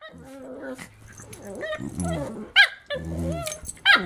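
A senior Shiba Inu and a puppy play-fighting: low growls broken by short, high yips, one about two and a half seconds in and another near the end.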